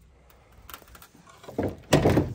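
Faint rustles and a few soft clicks from handling and movement, getting louder near the end.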